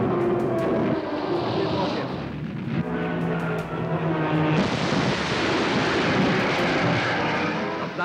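Old wartime newsreel soundtrack: a propeller warplane's engine drone mixed with battle noise, loud and steady, with a held chord-like tone in the middle.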